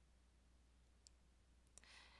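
Near silence: faint room tone with a steady low hum, one faint click about a second in, and a soft brief noise near the end.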